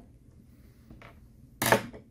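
A screwdriver set down on a glass shop counter: one short, sharp clatter well over a second in, after a quiet stretch with a faint small tap about a second in.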